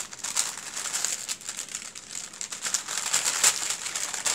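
Glassine paper bag crinkling and rustling as a stack of paper doilies is handled inside it, in irregular rustles, loudest near the end.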